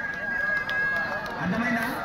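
Men's voices shouting and calling around a kabaddi court. A single long, steady high tone is held through the first second and a half.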